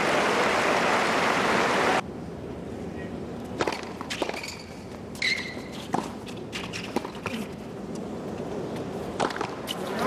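A crowd applauding in a tennis stadium, cut off abruptly about two seconds in. Then a tennis rally on a hard court: sharp racquet strikes and ball bounces a second or so apart, with a short high squeak near the middle.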